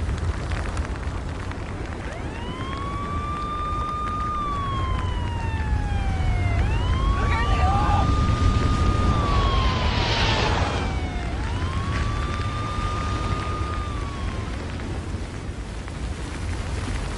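Emergency vehicle siren wailing slowly: three cycles, each rising, holding a few seconds, then falling, starting about two seconds in. Underneath runs a steady low rumble, with a short burst of hiss about ten seconds in.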